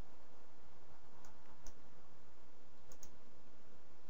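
A few sharp computer mouse button clicks, two of them close together near the end of the third second, over a steady faint microphone hiss.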